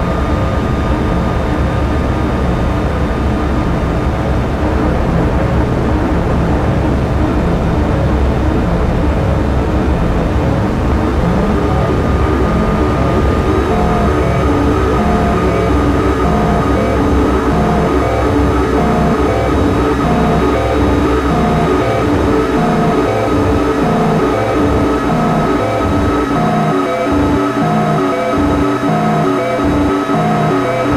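Pocket Drone mini drone synthesizer playing a thick drone of many steady oscillator tones, run through lo-fi delay pedals. About halfway in, a choppy repeating pattern of short blips comes in, and the deep low end thins out near the end as knobs are turned.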